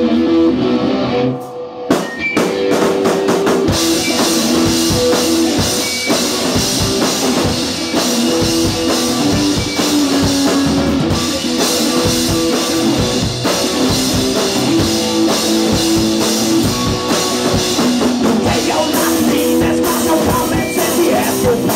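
Electric guitar through an amplifier and a drum kit playing instrumental rock. After a brief drop about two seconds in, the drums come in hard, with cymbals crashing from about four seconds on.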